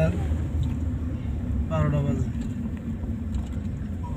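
Steady low rumble of a car's engine and tyres heard inside the cabin while driving, with a short burst of a voice about two seconds in.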